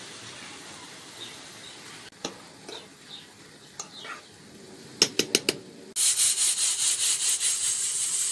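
A few quick sharp clicks about five seconds in, then a sudden loud hiss of steam from the pot of rice and peas steaming on the stove, pulsing slightly as it goes.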